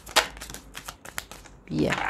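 A deck of tarot or oracle cards being shuffled by hand: an irregular run of crisp card snaps and slides, the sharpest just after the start.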